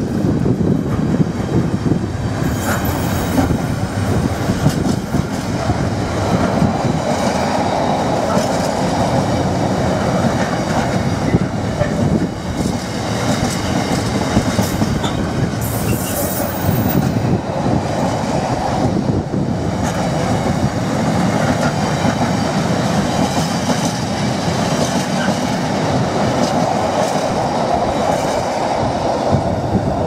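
Container wagons of an intermodal freight train rolling past at close range: a loud, steady rolling noise of steel wheels on the rails, with a brief high-pitched wheel squeal about sixteen seconds in. The train is accelerating away from the port, and the noise eases as the last wagon passes near the end.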